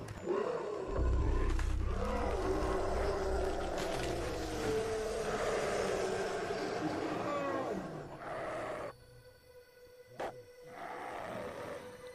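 Sound-effect growls and roars of beasts fighting over a low rumble, for about nine seconds. Then it drops almost to silence, with one short sound about ten seconds in and a faint tail.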